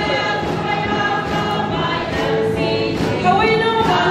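Large congregation singing together, many voices holding long notes.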